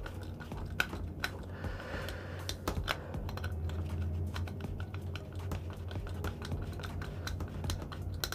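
Insulated screwdriver tightening the terminal screws of a 32 A commando plug: scattered small clicks and scrapes of the tip in the screw heads and the plastic housing. A low steady hum runs underneath.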